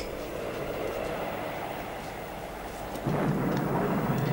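Dining-table ambience: a steady background hiss with a few faint cutlery clinks. About three seconds in it steps up abruptly to a louder, deeper steady rumble.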